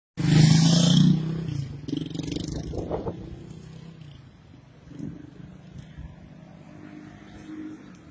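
A motor vehicle's engine running close by: loudest in the first second, then settling into a steady low hum that slowly fades.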